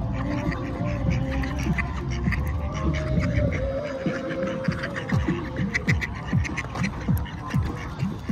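Mallard ducks quacking, with music playing alongside.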